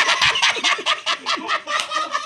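Several men laughing hard together, a fast run of breathy "ha" bursts about six or seven a second.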